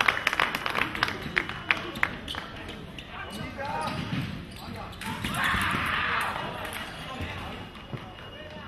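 Fencing hall sounds during a sabre bout: a quick run of sharp clicks and knocks in the first two seconds or so, then a swell of voices, shouting or cheering, for about a second and a half around five seconds in.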